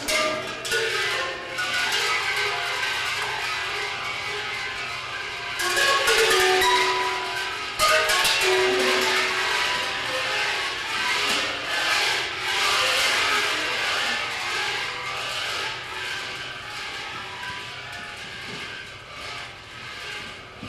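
Live contemporary chamber music for flute, guitar and percussion: the ensemble comes in suddenly and loudly, then keeps up a busy texture of plucked guitar notes, held flute tones and percussion strokes. Two sharp, loud percussion attacks land about six and eight seconds in, and the music thins a little toward the end.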